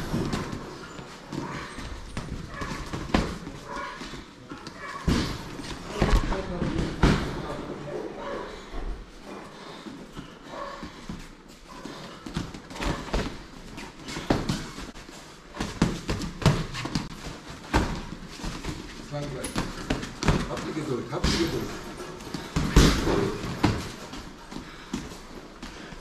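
Boxing sparring: irregular thuds and slaps of gloved punches landing on gloves and headgear, with shuffling footwork on the canvas, scattered through the round.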